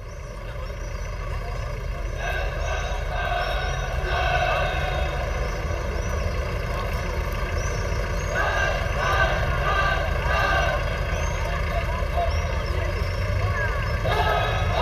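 A steady low rumble fading in over the first few seconds, with indistinct voices and irregular mid-range noise above it from about two seconds in.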